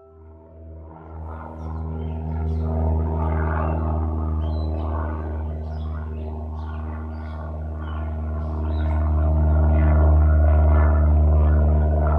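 Low, steady engine drone of a small propeller plane, swelling in over the first two seconds and growing louder toward the end as the plane comes near.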